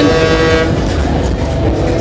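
Loud fairground din: a held horn-like tone at two pitches, strongest in the first second and then fading, over a constant low rumble from the rides and music.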